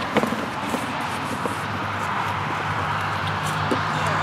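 Handling noise of a fabric carrying bag and a small plasma cutter being picked up: a few soft knocks over a steady outdoor background, with a low steady hum coming in about halfway through.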